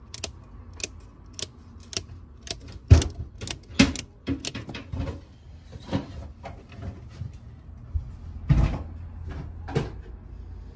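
Circuit breakers in a FuseBox consumer unit being switched on one after another by hand, each toggle giving a sharp click, about one every half second at first. Louder knocks come a few seconds in and again near the end.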